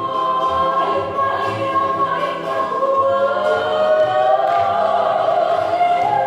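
Song for a hula dance, sung by several voices in long held notes: one note held steady through the first half, then the voices rising to higher held notes.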